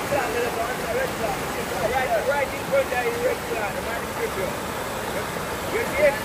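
Swollen, muddy river in flood rushing over rocks: a steady wash of water noise.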